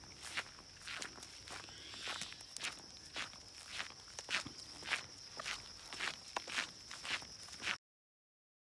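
Footsteps walking along a dirt forest trail, about two steps a second, cutting off abruptly just before the end.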